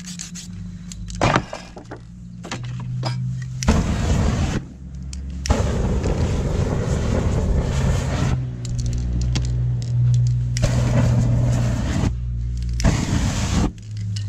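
Aerosol spray-paint can sprayed through a flame, a loud rushing hiss of burning spray. It starts about four seconds in, runs with short breaks until about twelve seconds, and comes back briefly near the end, over a low steady hum.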